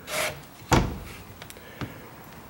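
A fiberglass boat hatch lid being handled: a short rub, then shutting with one sharp knock, followed by a few lighter clicks.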